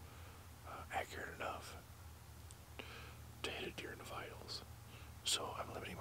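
A man whispering, in three short spells, over a steady low hum.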